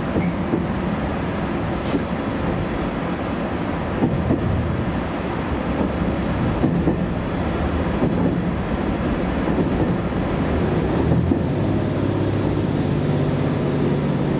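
JR Kyushu YC1-series hybrid diesel-electric railcar running, heard from inside the front of the car: steady running noise of the drivetrain and the wheels on the rails, with a few knocks from the track. A steadier low hum comes in for the last couple of seconds.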